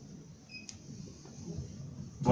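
Faint room noise with a low, uneven murmur. A brief high blip and a light click come a little over half a second in.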